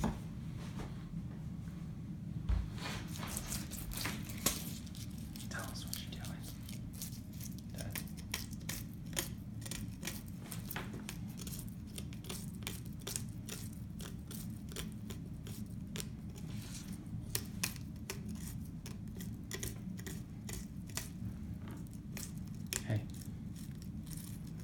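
Fillet knife cutting into a large northern pike behind the head: many small, sharp clicks and crackles as the blade works through skin and bones, over a steady low hum.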